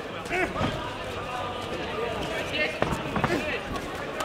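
Kickboxing strikes landing: a quick run of three sharp thuds about three seconds in, amid shouting voices in the hall.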